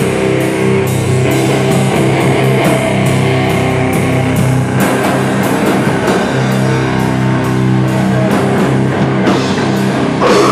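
Hardcore band playing live: heavy distorted electric guitar chords held over a drum kit with regular cymbal and drum strikes, an instrumental stretch with no vocals.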